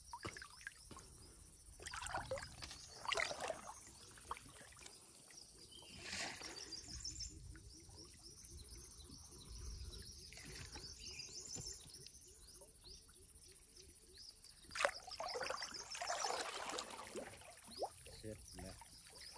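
A bird calling in repeated bouts of rapid high chirping notes, over water sloshing and splashing in the shallow pond in several bursts, loudest near the end.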